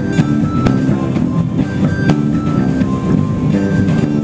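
A live band playing an instrumental passage: strummed acoustic guitars, electric bass, piano and a drum kit, with steady beat hits throughout.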